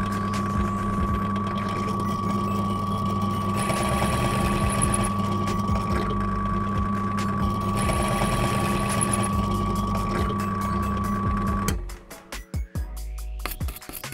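Drill press motor running steadily while the bit cuts into the metal tonearm pivot of a Technics turntable, deepening the bearing seat so a small bearing can sit flush. It runs for about twelve seconds, then stops.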